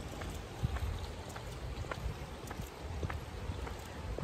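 Quiet outdoor ambience picked up by a hand-held phone microphone: a low, uneven wind rumble with a faint haze and scattered faint ticks.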